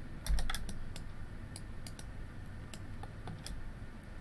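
Computer keyboard keys clicking, irregular and scattered, about a dozen presses in four seconds, with a low thump about a third of a second in.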